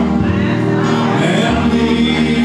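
Live music: a man singing into a microphone over sustained keyboard backing, the low held chords changing twice.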